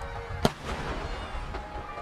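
Aerial firework shell bursting: one sharp bang about half a second in, its noise trailing off over the next second. Background music with held tones plays throughout.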